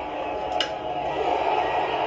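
A wooden baseball bat cracks against a pitched ball about half a second in, followed by a stadium crowd's cheering swelling as the ball flies deep, heard through a TV speaker.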